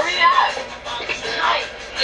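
Movie soundtrack playing: voices from the film over background music.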